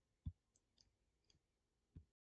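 Near silence broken by a few faint clicks: one short click about a quarter second in, some lighter ticks after it, and another click at the very end.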